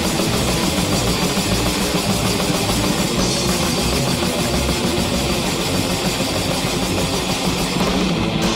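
Black/thrash metal recording: distorted electric guitars over fast, dense drumming, playing continuously at full loudness.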